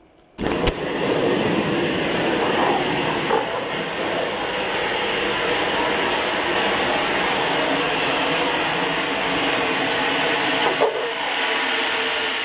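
BCA avalanche airbag firing: a sharp pop about half a second in, then a long steady rushing hiss of compressed gas as the bag inflates.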